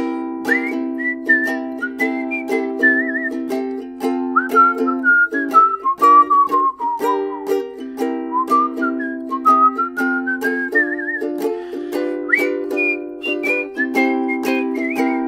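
A man whistling the melody of the song over a ukulele strumming chords in a steady rhythm. The whistled tune runs high, dips lower in the middle and climbs again, with a couple of quick warbles.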